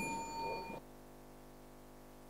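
A single bright, bell-like ding that rings with several tones for under a second and then stops abruptly, leaving a faint steady hum.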